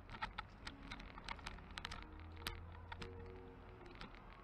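Irregular light clicking and rattling, several clicks a second at uneven spacing. Faint music runs underneath.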